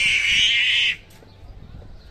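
A loud, harsh screech that cuts off suddenly about a second in.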